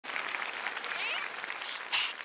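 Audience applauding: a dense, steady clatter of many hands clapping.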